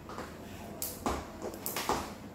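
A few sharp slaps and knocks, about four in two seconds, from a skipping rope hitting a hard tiled floor and feet landing, during criss-cross skipping.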